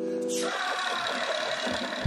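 Song intro: a held sung chord stops about half a second in and gives way to a static-like noise transition effect with faint swooping low tones, building toward the beat drop.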